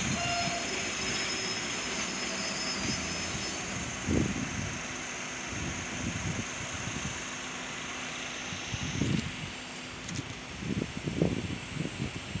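JR Freight EF210 electric locomotive hauling a container freight train, a steady rumble of wheels on rail with a faint high whine that fades out about nine seconds in. Several low thumps of wind on the microphone break in.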